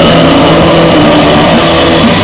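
Black metal track: loud, dense distorted guitars and drums with held notes in one unbroken wall of sound.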